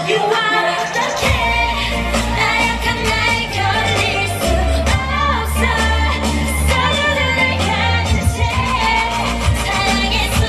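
K-pop dance song with female singing, played loud through a stage sound system; a heavy bass line comes in about a second in.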